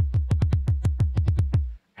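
A drum-machine pattern from the LMMS Beat+Bassline editor playing back: a fast, even run of deep synthesized drum hits, about eight a second, each falling in pitch, over a steady low bass. The steps were clicked in at random, and it stops suddenly near the end.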